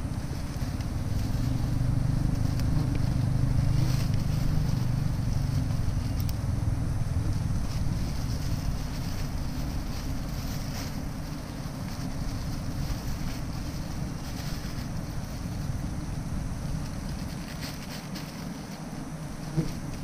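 Wild honeybees from a nest being harvested, buzzing in a steady low hum that is fuller in the first few seconds and then eases, with a few faint ticks from the cutting.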